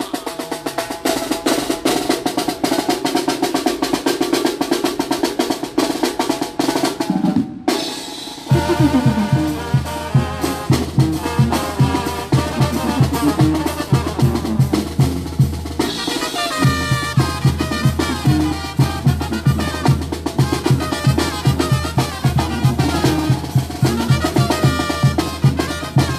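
Zacatecan tamborazo band playing live. It opens with a long snare drum roll over the bass drum. After a short break about eight seconds in, the brass melody comes in over a low bass line and a steady drumbeat, with the bass dropping out for a moment near the middle.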